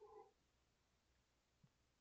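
Near silence: room tone, with a brief faint pitched sound right at the start.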